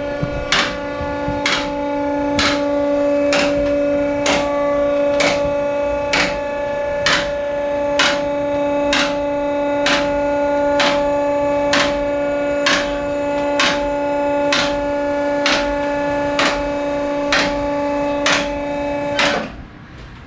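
Bishamon two-post car lift raising a car: a steady electric pump motor hum with the safety locks clicking evenly, about one and a half clicks a second. It cuts off about a second before the end as the lift stops.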